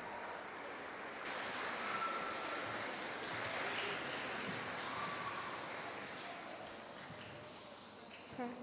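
Audience applauding. The clapping swells about a second in and dies away toward the end.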